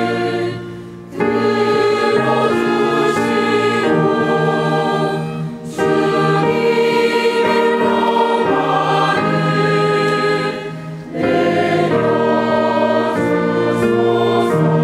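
Church choir of mixed men's and women's voices singing in parts, held chords in phrases with short breaks between them, about a second in, near six seconds and about eleven seconds in.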